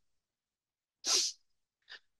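One short, sharp breath, a quick sniff or intake of air, about a second in, against otherwise dead silence. A faint mouth noise follows just before speech resumes.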